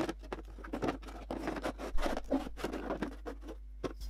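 Plastic cosmetic tubs and bottles being moved about in a drawer: an irregular run of small knocks, clicks and scrapes, with sharper knocks about two seconds in and just before the end.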